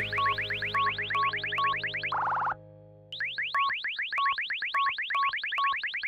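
Star Wars X-wing targeting-computer sound effect: rapid rising electronic chirps, about eight a second, with a short beep about twice a second, ending in a steady tone held for about half a second as the target locks. The sequence plays twice, with a brief silent gap between.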